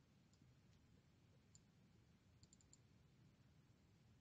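Near silence with a few faint computer-mouse clicks, ending in a quick run of four about two and a half seconds in.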